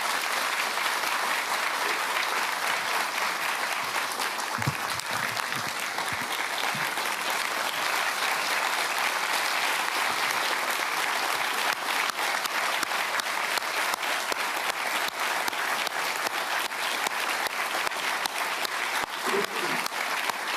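Audience applauding, a long, steady round of clapping.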